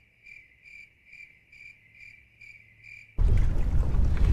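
Cricket-chirping sound effect: a clean, even run of chirps about two a second over total quiet, the stock 'crickets' gag for nothing happening. About three seconds in it cuts off abruptly to a loud low rumble of wind and boat noise.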